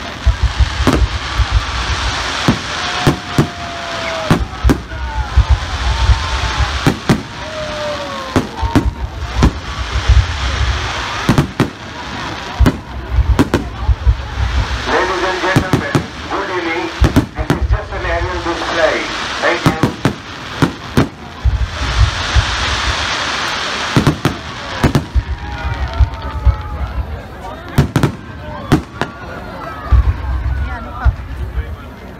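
Aerial fireworks going off in a rapid, continuous string of sharp bangs over a steady crackle of bursting stars, with people's voices close by around the middle.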